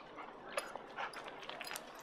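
A dog making a few faint, short sounds.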